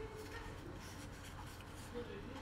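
Faint rustle of Pokémon trading cards sliding and rubbing against one another as a pack of cards is fanned out by hand.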